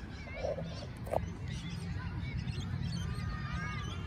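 Short chirping bird calls over a steady low wind rumble on the microphone, with one sharp thump about a second in.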